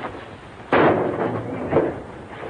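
A single loud gunshot about 0.7 s in, sudden, its ring trailing off over about a second, on an old film soundtrack; a second, weaker burst follows near the end.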